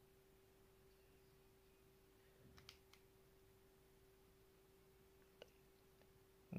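Near silence: a faint steady hum, with a few faint clicks about halfway through and again near the end.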